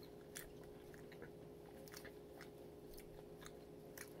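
Faint chewing of an oatmeal muffin: soft, irregular small clicks of the mouth a few times a second, over a faint steady hum.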